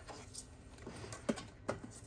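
A few faint, scattered clicks and taps as a flexible tape measure is handled against the plastic inside of a small mini fridge.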